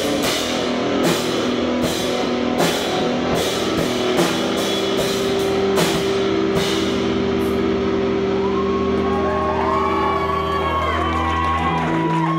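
Screamo band playing live, drum kit and distorted electric guitar. The drum hits stop about seven seconds in and a held guitar chord rings on, with higher held tones coming in near the end.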